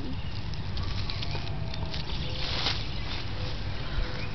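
Grass rustling and patting under a crawling baby's hands, with a louder rustle a little past the middle, over a steady low rumble.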